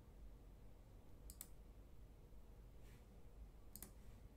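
Computer mouse clicks over quiet room tone: a quick pair about a second and a half in, a fainter single click around three seconds, and another quick pair near the end.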